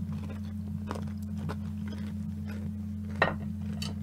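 Close-up chewing of a bite of deep-fried calamari, with a few faint clicks and one sharper click about three seconds in, over a steady low hum.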